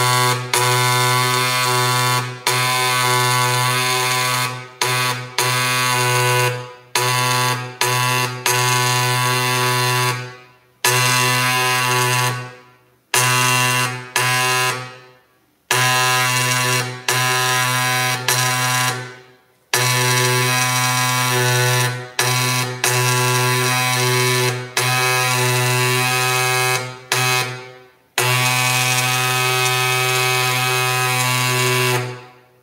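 Dot peen marking machine stamping characters into a metal plate: its stylus hammers fast enough to make a loud, steady buzz. The buzz stops and starts every second or few as the head moves from one character or stroke to the next.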